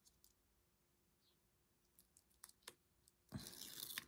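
Mostly near silence with a few faint clicks, then near the end a short rustle as the backing is peeled off a strip of double-sided tape.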